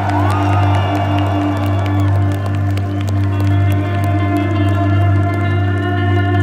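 Instrumental rock band playing live through a PA. A steady low drone runs under a note that pulses a few times a second, with held guitar tones above and a sliding high note near the start; the crowd is faintly heard.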